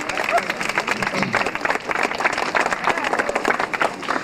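An audience applauding: many hands clapping steadily.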